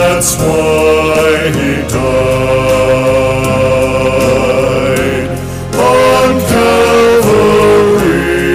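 Two men singing a sacred song together into microphones over instrumental accompaniment, holding long notes, with a short break between phrases about five seconds in.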